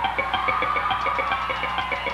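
Rock band playing live: one long held, slightly wavering tone over a fast, even ticking pulse, the opening of a song before the vocals come in.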